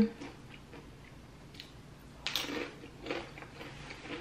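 Close-up chewing of crunchy tortilla chips, in a few short crackly bursts; the loudest crunches come about two and a half and three seconds in.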